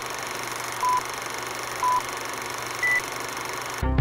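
Film-leader countdown beeps over a steady hiss: a short beep once a second, three at the same pitch and a fourth one higher. Music starts just before the end.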